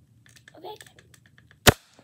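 A double-barrelled Nerf foam-dart blaster firing a dart: one sharp pop near the end.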